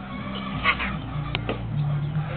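A short animal call, a quick pair of pitched notes, comes a little past a third of the way in, followed by two light clicks, all over a low steady hum.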